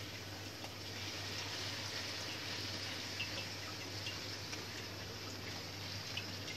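Puri frying in hot ghee in a wok: a steady sizzle, with a few faint ticks and a steady low hum underneath.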